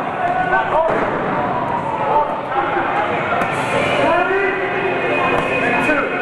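Several people shouting and yelling, with a sharp knock about a second in.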